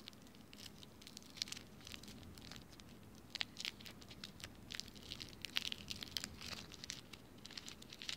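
Paper wrapper of a mini Tootsie Pop crinkling and tearing as it is picked off by hand: faint, scattered crackles, busiest in the second half.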